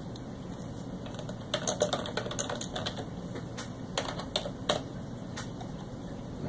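Computer keyboard keys clicking as a short file name is typed: a quick run of keystrokes starting about a second and a half in, thinning out to a few spaced clicks near the end.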